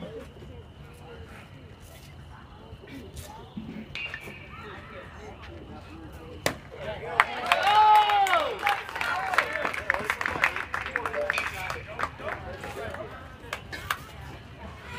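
A baseball bat strikes a pitched ball with one sharp crack about six and a half seconds in. Right after it, spectators break into loud yelling and cheering that carries on for several seconds.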